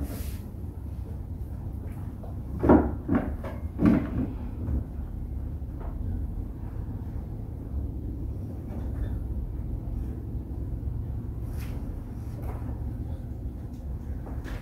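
A few knocks and clunks of objects being handled and set down, the loudest cluster about three to four seconds in, with a couple of faint clicks later on, over a steady low hum.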